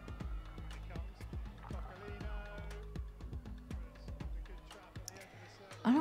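Broadcast sound of a field hockey match playing quietly under the stream: steady stadium background with faint music and many short, sharp clicks.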